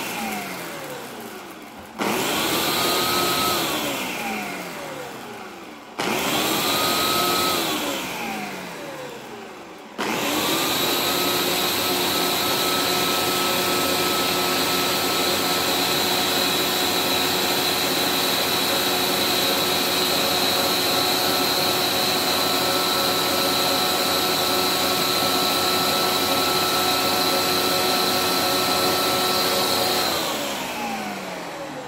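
Ninja Auto-iQ blender motor running an automatic program on a smoothie: short bursts every four seconds, each spinning up and winding down with falling pitch, then from about ten seconds in one long steady run that winds down at the end.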